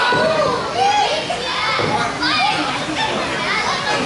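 Ringside spectators calling and shouting at a wrestling match in many overlapping, high-pitched voices, with no single voice clear.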